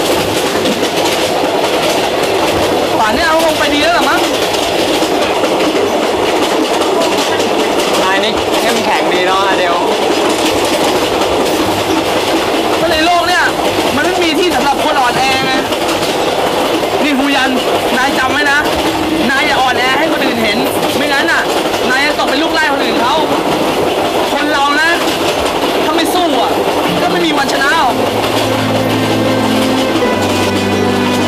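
Train running on the rails, heard from inside a passenger carriage: a steady rumble with wheel clatter over the track. Music comes in near the end.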